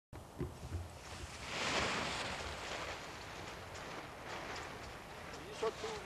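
Wind gusting on an open hilltop: a broad rush that swells and fades about two seconds in, over a steady background of wind, with a few short bumps in the first second and a brief voice near the end.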